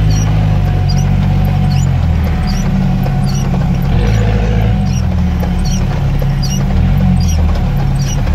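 UAZ off-roader's engine drone heard from inside the cab while crawling over a rough dirt track, its pitch shifting in steps as the load changes. Windshield wipers squeak briefly on the wet glass about once a second.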